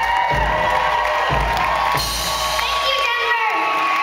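A live rock band with drums and bass plays its closing bars, with a held high note, and the band drops out about halfway through as the audience cheers and whoops, children among them.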